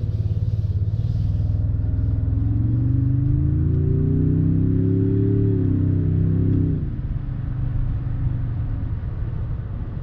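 Toyota Tundra's twin-turbo 3.5-litre V6, breathing through a new TRD performance air filter, pulling hard as the truck accelerates, with a little turbo noise. The engine note climbs steadily for about five seconds, holds, then falls away sharply about seven seconds in.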